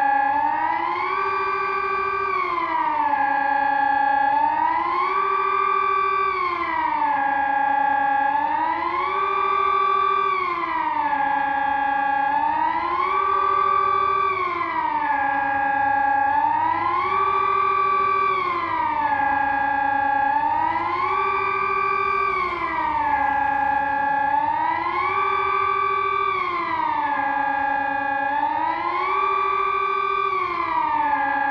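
Sonnenburg SES 1000 civil-defence siren sounding the Swiss 'general alarm' signal. It is a chord of several tones that rises, holds high, falls and holds low again, one cycle about every four seconds. In earnest the signal tells people to switch on the radio and follow the authorities' instructions.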